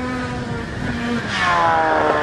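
Snowmobile engine running at speed and getting louder as it comes up to and over a jump. About a second and a half in, its pitch shifts and dips slightly and the sound turns brighter as it goes past.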